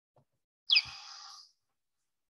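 Recording of a pallid bat's echolocation call played back: one short chirp sweeping quickly down in pitch, trailing off into about half a second of hiss.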